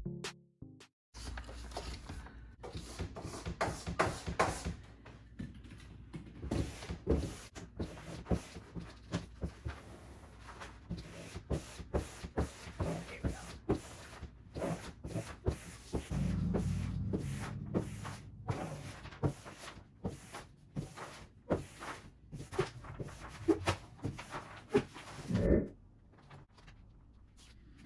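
Irregular crackling, taps and rustles of a vinyl peel-and-stick door mural and its backing paper being peeled, pressed and smoothed onto a wooden door.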